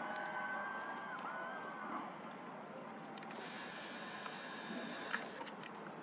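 Faint outdoor background hiss with a thin whistled tone in the first two seconds: one held for about a second and a half, then a shorter one. A couple of light clicks come near the end.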